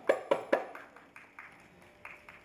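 A quick run of sharp percussion strikes from the Carnatic accompaniment, each with a short ring: three loud strokes in the first half-second, then softer ones about four or five a second, fading away.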